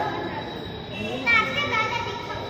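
Voices of people nearby, with a high-pitched child's voice calling out loudest a little over a second in.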